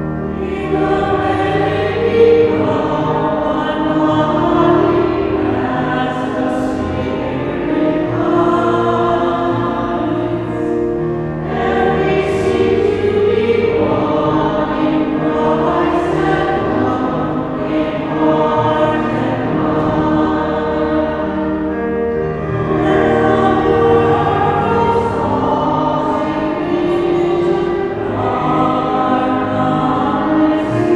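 Choir singing a slow hymn in sustained phrases, with short breaks between lines and a steady low accompaniment underneath.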